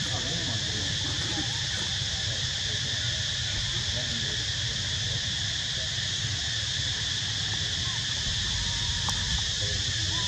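Steady outdoor insect chorus, a constant high buzz, over a low rumble. Faint distant voices come through now and then, with a laugh at the very start.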